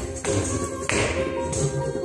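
Odissi dance music with steady held tones and sharp percussion strokes, with jingling and the dancer's bare feet striking the stage floor in time.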